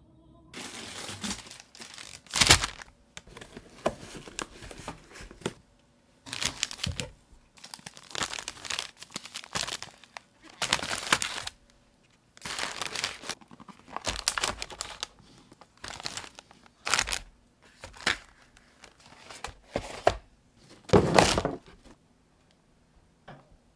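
Plastic food packaging and bags being handled while delivered groceries are unpacked. They crinkle and rustle in irregular bursts, loudest about two seconds in and near the end.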